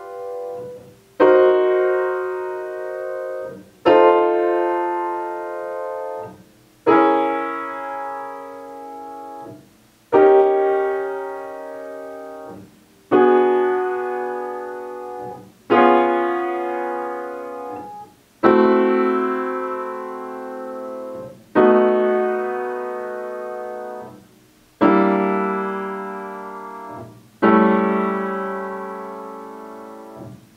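Upright piano playing a slow chain of block chords, about ten of them, each struck and left to ring for close to three seconds. They are ii half-diminished 7b to V7d cadences, each V7d resolving onto the ii half-diminished chord of the key a tone lower, stepping down through C, B flat, A flat, G flat, E and D.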